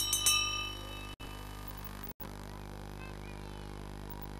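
Greyhound track bell ringing in quick repeated strokes as the hare is set running. The strokes end about half a second in, and a steady low hum follows.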